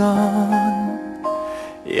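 Thai-language pop song: a voice sings over instrumental backing, holding one note for about a second.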